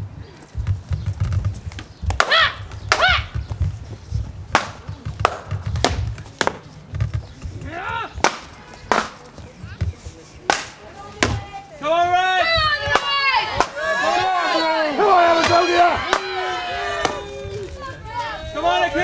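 Staged gladiator combat: repeated sharp strikes of weapons against shields, with low thuds of footwork on a hollow stage platform. From about twelve seconds in, raised voices crying out over the blows.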